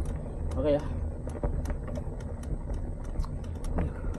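Mountain bike rolling along a bumpy dirt path: a steady low rumble with scattered clicks and rattles from the bike and tyres.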